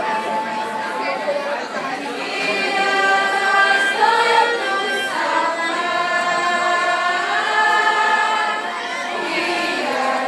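A small mixed choir of teenage boys and girls singing a Christmas song together, in long held notes.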